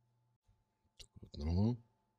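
A couple of short clicks about a second in, then a brief half-second voice sound.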